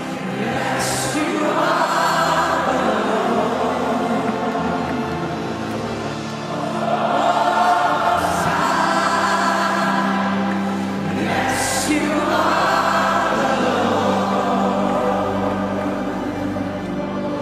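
Slow gospel worship music: a choir singing long held notes over sustained chords, swelling in waves about every five seconds.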